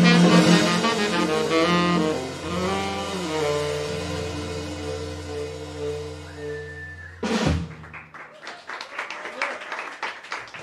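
Jazz quartet of saxophone, electric jazz guitar, double bass and drums holding and letting ring the final chord of a tune, fading slowly. A sharp closing drum-and-cymbal hit comes about seven seconds in, and audience clapping follows.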